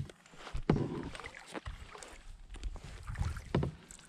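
Kayak being paddled: paddle water sounds with several light knocks and splashes at irregular intervals.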